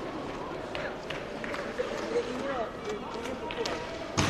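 Inline roller hockey play: sticks clacking sharply against the ball and rink floor at scattered moments over the rolling of skate wheels, with voices calling out.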